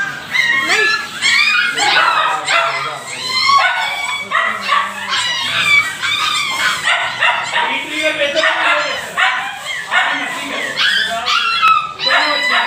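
Several puppies and dogs yipping, whimpering and barking over one another without a break.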